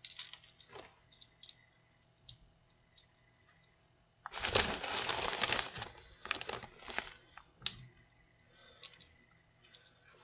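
Clear plastic zip-top bag crinkling and rustling as a spoon scoops crushed-cookie crumbs out of it, with light clicks of the spoon. The rustling is loudest about four seconds in, followed by a few shorter bursts.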